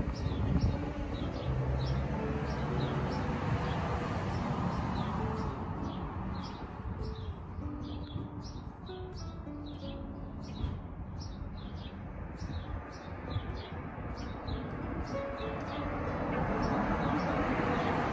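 A small bird chirping over and over, short high chirps about two or three a second, over a low outdoor rumble of breeze and traffic.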